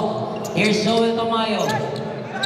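A basketball dribbled on an indoor court during play, with a man's voice over the game.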